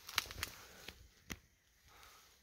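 A few faint sharp snaps and crackles, about three in all, of footsteps on dry twigs and forest litter.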